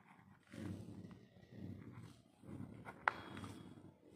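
Faint, low murmuring in three short stretches, like a voice under the breath, with one sharp click about three seconds in.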